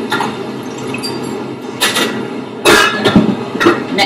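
A few knocks and clinks of bar tools and glassware being set down and picked up: a jigger, the Campari bottle and a glass jug, over steady room noise. The loudest knocks come a little past the middle.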